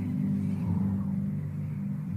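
A steady low hum made of a few even, sustained tones, with no speech over it.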